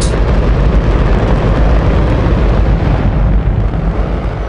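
Space Shuttle main engine, a liquid hydrogen–oxygen rocket engine, firing on a test stand: a loud, steady wall of noise, deepest in the low end.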